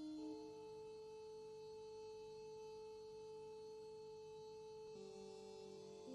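Quiet atonal electronic music: a few steady, pure sine-like tones held for several seconds, shifting to a new cluster of pitches about five seconds in.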